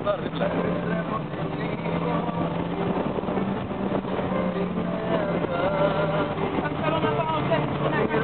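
Motorboat engine running steadily at speed with water rushing in its wake as it tows an inflatable tube, with voices calling out over it.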